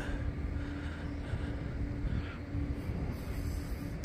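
Steady background hum with a constant low tone that stops about three seconds in, over a low rumble.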